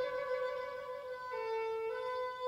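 Baroque chamber music: a gut-strung violin holds long bowed notes alone above the ensemble, stepping down a note about two-thirds of the way through and back up near the end.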